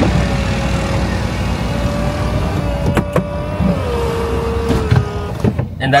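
Electric motor whine of the Mercedes-AMG SLC 43's power roof and windows finishing the roof-closing sequence: a steady whine that steps down in pitch about two-thirds of the way through and stops shortly before the end, with a couple of clicks in the middle, over a low engine rumble.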